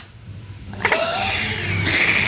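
A woman laughing, starting about a second in after a short lull, breathy and unworded.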